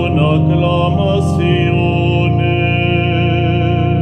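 A man singing a Spanish-language psalm hymn in a long, wavering line over sustained held chords from a keyboard, with a brief sibilant consonant about a second in.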